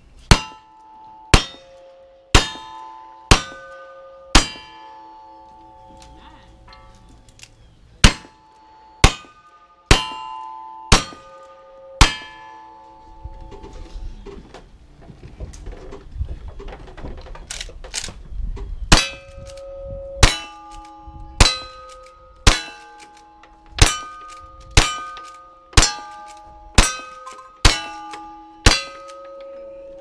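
Gunshots, each followed at once by the ringing clang of a hit steel target, with the targets ringing at different pitches. A string of five shots about a second apart comes first, then a second string of five. After a pause of several seconds, about ten more shots follow at roughly one a second.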